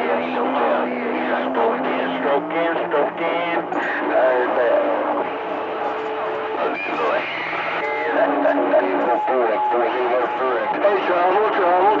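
CB radio receiver on channel 28 giving out overlapping, garbled voices of distant stations, with steady whistling tones held underneath them for seconds at a time.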